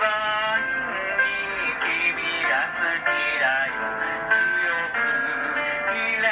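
A man singing a Japanese pop song over an instrumental backing track, his melody gliding and wavering with vibrato.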